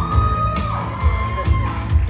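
Live rock and roll band playing with a steady beat and bass line, with one long high note gliding up at the start and held over the band.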